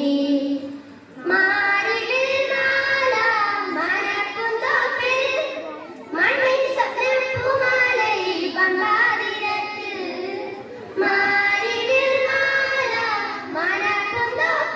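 A group of children singing together through microphones, in long sung phrases with brief pauses for breath about a second in, around the middle, and again near the end.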